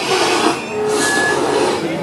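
Velociraptor puppet's harsh, hissing screech, brightening about half a second in, with a faint thin whistle inside the rasp.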